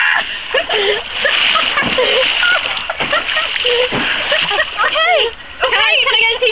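Stream water splashing as women wade and sit in it, mixed with their laughing and excited vocal sounds throughout.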